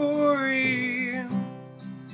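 A man singing one held note over a strummed acoustic guitar; the voice stops about a second and a half in, leaving the guitar ringing more quietly.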